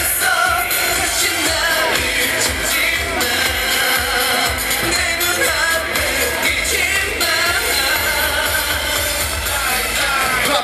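A K-pop boy band's dance-pop song with a steady beat and group vocals, played loud over a concert sound system and heard from the audience.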